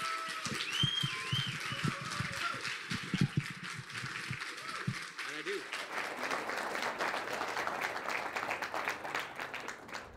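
Audience applauding, a dense patter of clapping, with a few voices over it in the first half.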